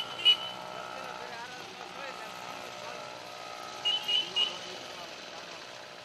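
Short high electronic beeps, about four a second: two right at the start and a few more about four seconds in, over a steady engine hum.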